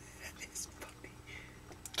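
A person whispering in short, hushed fragments over a faint low hum.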